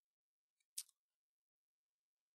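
Near silence, with a single short computer mouse click a little under a second in.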